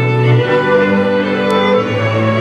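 Moravian cimbalom band playing folk music: violins lead over sustained low bass notes that step up in pitch about half a second in.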